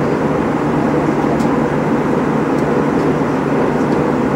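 Steady jet airliner cabin noise in flight: an even, loud rumble and hiss that does not change. A few faint clicks sound over it.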